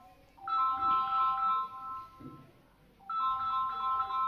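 A short electronic ringtone-style tune of a few bell-like notes. It starts about half a second in and plays through once, then begins again just after three seconds, repeating every two and a half seconds or so.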